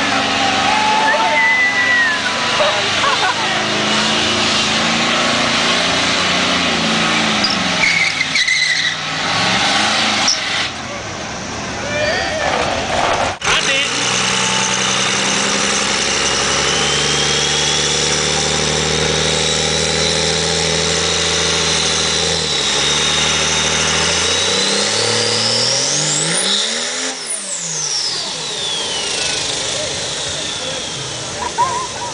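Diesel pickup truck doing a burnout: engine held at high revs with the rear tyres spinning, amid crowd chatter. After a cut, another diesel engine runs steadily with a thin high turbo whine that slowly climbs. Near the end it revs sharply up and back down, the whine sweeping up and falling with it.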